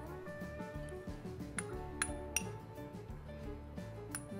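Metal spoon clinking against a small glass bowl, three sharp clinks in quick succession about halfway through, over background music.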